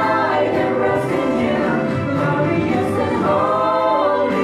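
Small mixed vocal group, men's and a woman's voices, singing a Christian worship song in harmony into handheld microphones, sustained and steady throughout.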